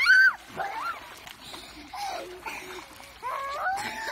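Young children squealing and crying out in play in a pool, a loud high squeal right at the start, then more gliding cries and a longer wavering one near the end, with some water splashing.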